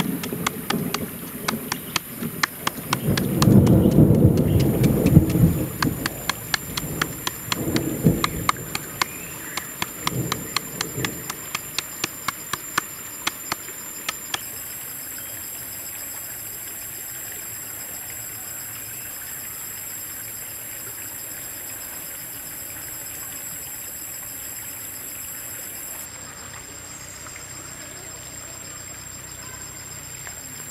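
Rapid, evenly spaced knife strokes cutting a carrot against a wooden board, several a second, with a louder, heavier stretch about four seconds in. The strokes stop suddenly about halfway through, leaving only a faint steady hiss.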